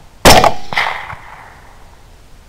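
Second shot of a double tap from a suppressed 6.5 Grendel AR-15-style carbine: one sharp report about a quarter second in, its ring and echo dying away over about a second, with a fainter knock about three quarters of a second in.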